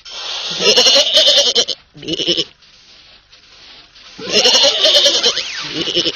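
A wavering, bleat-like cartoon cry, heard twice: once about a second in and again about four seconds in.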